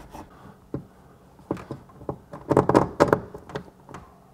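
A cloth being rubbed over a panel in a few short wiping strokes, most of them bunched together about two and a half to three and a half seconds in.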